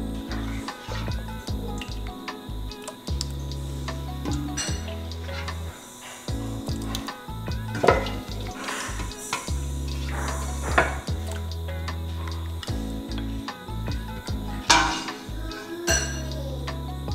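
A metal ladle scraping and knocking in a stainless steel stockpot as soup is scooped out and poured into glass storage containers, with a few sharp clinks of metal and glass, the loudest about eight, eleven and fifteen seconds in. Background music plays throughout.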